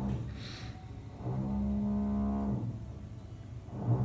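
A low, steady moaning hum, heard as one long held tone of about a second and a half and then again starting near the end. It is the sound of air blowing, which the reader herself calls 'pušenje' (blowing). A short rustle of cards being shuffled comes about half a second in.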